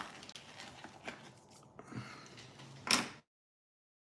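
Faint handling noise from a phone held close to its microphone, with one short, loud scrape or knock about three seconds in, after which the sound cuts out abruptly to complete silence.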